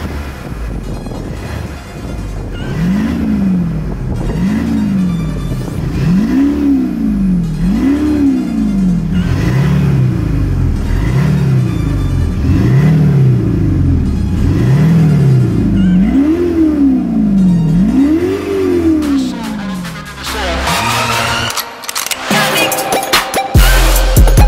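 An Audi A5 diesel with a Kufatec Soundbooster active exhaust sound generator, its V8-style sound revved in about ten even blips at standstill, one every second and a half or so. The booster's sound level is stepped up from level 1 to level 4, and the revs grow louder. Music comes back in near the end.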